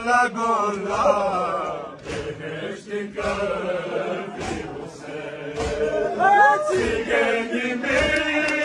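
A group of men chanting a Balti noha (lament) in unison, with sharp hand slaps on the chest (matam) falling about every second and a half.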